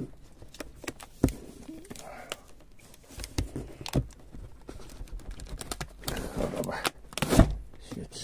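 Metal pull-tab food cans knocking against each other in a cardboard box, with plastic shrink-wrap crinkling, as a hand tugs at a can held fast in the wrap. There are several separate knocks, the loudest near the end.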